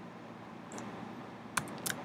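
A few computer keyboard keystrokes: a faint couple about three quarters of a second in, then two sharper clicks near the end, over a steady background hiss.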